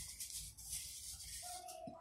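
Faint rubbing of nested disposable paper cups as the bottom cup is turned in the hand to dial a digit, over a low room hum.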